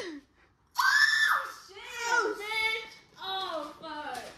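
Excited women's voices squealing and exclaiming, high-pitched, with one long held squeal about a second in. A sudden half-second of dead silence comes just before it.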